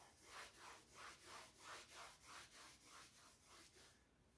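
Eraser rubbing chalk off a blackboard in quick back-and-forth strokes, about three a second, faint and growing fainter toward the end.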